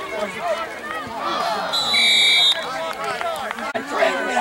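A referee's whistle gives one steady, shrill blast of under a second, a little before the middle, over spectators' voices and shouts.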